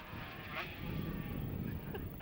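A 250cc two-stroke racing motorcycle engine running at speed, faint and distant, growing slightly louder as the bike passes.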